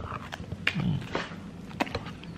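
A person biting into and chewing a slice of pizza close to the microphone, with sharp wet mouth clicks and a short low 'mm' hum a little under a second in.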